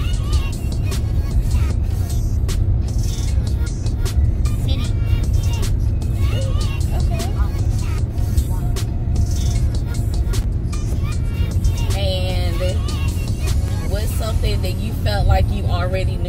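Background music with a beat laid over the steady low rumble of road noise inside a moving car's cabin.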